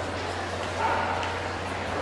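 A dog gives a short bark or yip about a second in, over a steady low hum and the background noise of a large indoor arena.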